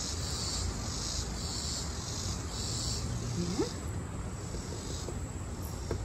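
Insects chirping in steady pulses, a little under two a second, which stop a little past halfway; one short rising squeak near the middle.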